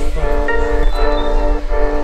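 Background music: sustained chords with bell-like tones over a steady low bass.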